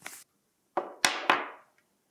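Paper and packaging being handled: a short rustle at the start, then three quick swishes in a row about a second in, the last ones fading out.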